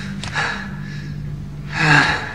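A man breathing hard in sharp gasps, a few breaths with the loudest near the end, over a low steady drone.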